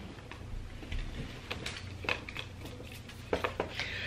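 Faint handling noise from a sneaker being turned over in the hands: scattered soft clicks and rustles, with a quick cluster of sharper taps near the end, over a low steady hum.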